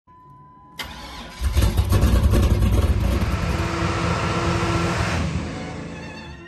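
A car engine starting and running with a deep, uneven rumble that comes in suddenly about a second in and fades away near the end.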